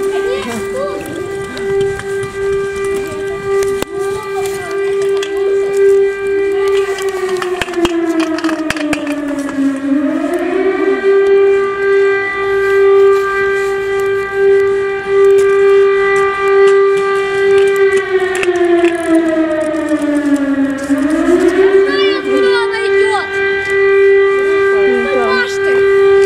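Civil-defence air-raid siren sounding outdoors: a loud steady tone held for several seconds, then sliding down in pitch and swinging back up, twice, about ten seconds apart.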